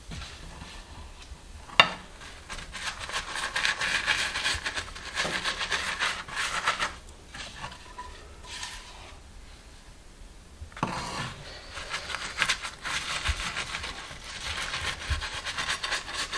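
Pastry brush spreading melted garlic butter over a flatbread on a plate, a soft rubbing that comes in two stretches with a quieter spell between them while the brush goes back to the frying pan. A sharp tap about two seconds in and a knock about eleven seconds in.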